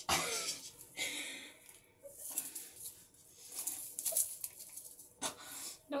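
A person's breathy, wheezing exhalations in about five bursts, each up to a second long, with short gaps between them.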